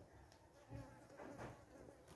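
Near silence: quiet room tone, with a couple of faint, soft sounds about a third of a second and three quarters of the way in.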